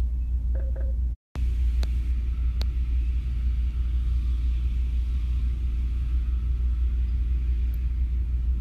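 A steady low rumble, broken by a brief total dropout a little over a second in, with a few faint clicks.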